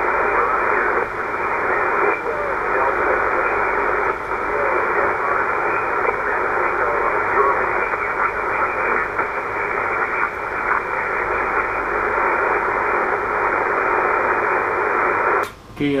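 Shortwave transceiver's loudspeaker on 20-metre single-sideband: band hiss and static with faint, hard-to-copy voices of stations answering a CQ call. The audio is narrow and thin, cutting in suddenly at the start and dropping out just before the end.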